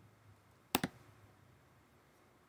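A single mouse click, heard as two quick ticks close together about three-quarters of a second in, selecting a menu item.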